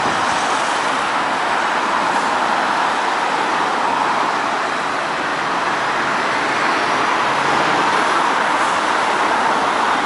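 Road traffic on a busy city street: a steady wash of tyre and engine noise from passing vehicles, with a van and a flatbed lorry going by close at the start, swelling slightly about two-thirds of the way through.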